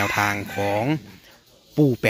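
A man speaking Thai with one long, drawn-out syllable, then a short pause before he speaks again.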